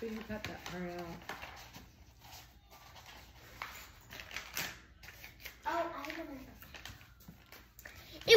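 Quiet room tone with faint, distant speech: a child's voice briefly near the start and again for a moment past the middle, with a couple of soft knocks in between.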